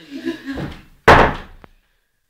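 A sudden loud bang, a slam or heavy knock, about halfway through, dying away quickly and followed by a short click; then the sound cuts out to silence.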